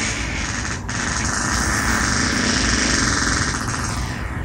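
A long, rough fart, sustained for several seconds, with a brief break about a second in.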